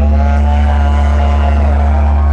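Live metal band's amplified bass and electric guitars holding a chord that rings on after the drums stop: a loud, steady low drone with several higher guitar notes sustained above it.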